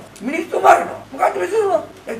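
A man speaking, with pitch rising and falling and short pauses between phrases.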